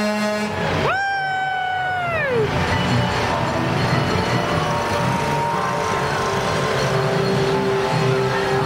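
A lorry's air horn sounds one blast about a second in. It holds a steady pitch for about a second, then sags downward in pitch as it dies away. Music and a low engine rumble carry on underneath.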